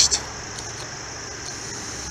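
Steady outdoor background noise: an even hiss with a high-pitched band and a low rumble, with no distinct event.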